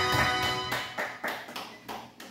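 Karaoke backing track of an enka song ending, its final chord dying away within the first second, followed by a few sharp hand claps.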